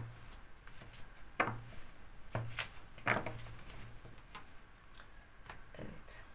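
A tarot card deck being handled: quiet, scattered taps and rubs of the cards in the hands, with the deck set down on a cloth-covered table near the end.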